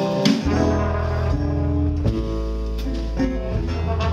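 Live blues band playing an instrumental passage between verses: guitar over an upright double bass line, with a few sharp hits.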